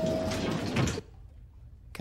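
Elevator doors sliding shut with a rushing noise that stops abruptly about a second in, while a single chime tone from the elevator's bell fades out underneath.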